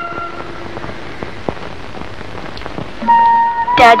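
Old film soundtrack: a held background-music note fades out in the first moments, leaving a steady hiss with scattered clicks. About three seconds in, the music comes back with a held high note, then a loud sliding phrase just before the end.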